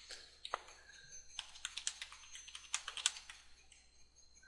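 Computer keyboard being typed on: a quick, irregular run of key clicks, fairly faint.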